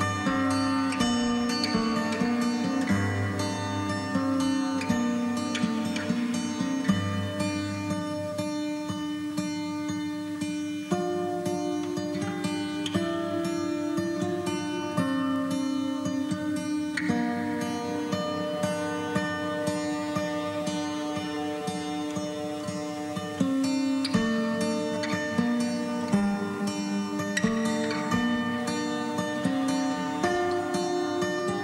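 Instrumental music: quick, repeated plucked-string notes over held lower notes that change pitch every few seconds.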